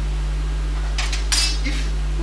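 Short metallic clinking, two quick sharp clinks about a second in, from a metal lecture pointer being put away; a steady electrical hum runs underneath.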